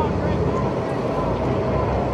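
Faint, distant voices of onlookers over a steady low rumble and hiss of outdoor noise.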